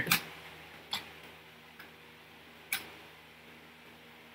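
A few separate computer keyboard keystrokes, sharp single clicks about a second apart, over a faint steady hum.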